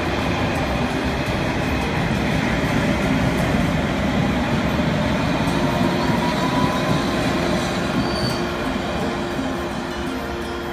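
Steady running noise of a vehicle in motion, with a faint rising whine about six seconds in.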